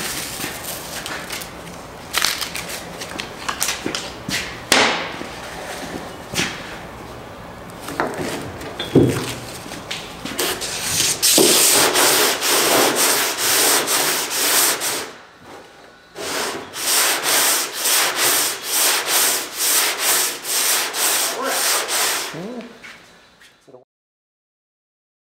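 Body filler on a steel trunk lid being block-sanded by hand with a long sanding block, in regular back-and-forth scraping strokes about two a second. These fill the second half. Scattered knocks and scrapes come before them in the first half.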